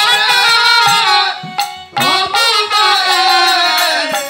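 Live Bengali devotional folk music for a Ramayan performance, played loud. A melody of held notes slides and bends in pitch over sharp percussion strikes.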